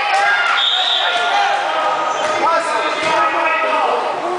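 Crowded gym during a youth basketball game: many overlapping voices from spectators and players, a basketball bouncing on the hardwood floor, and a short steady referee's whistle about half a second in.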